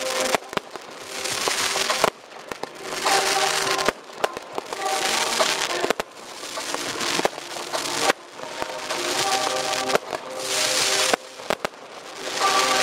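Fireworks going off: comets and shells launching and bursting, with sharp bangs, crackle and swells of hissing that cut off suddenly, over loud music.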